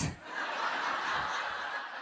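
Live audience laughing at a punchline, a crowd laugh that builds about half a second in and begins to fade near the end.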